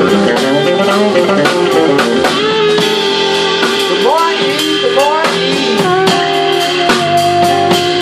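Live blues band playing: fretless electric bass, keyboards and drum kit with steady cymbal and drum hits. A long held note early on and a higher held note near the end, with bending, sliding notes between them.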